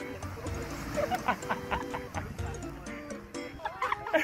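Background music with sustained notes, and a quick run of short, sharp sounds about a second in.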